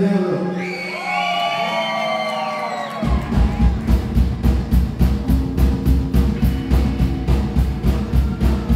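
Whoops and cheers over a held low note. About three seconds in, a live rock band of electric guitars, bass and drums crashes in at a fast, even beat.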